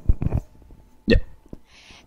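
Speech only: a few short spoken fragments, including a quick "yeah" about a second in, with quiet gaps between.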